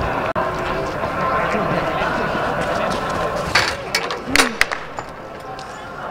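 Distant voices of people around the track, with a quick cluster of sharp thuds and a rustle about three and a half to four and a half seconds in: a high jumper's last strides, take-off and landing on the foam landing mat.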